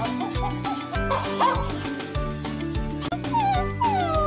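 Upbeat background music with a steady beat, over which a remote-control robot dog toy plays short electronic animal-imitation calls from its speaker, once about a second in and again as a falling call near the end.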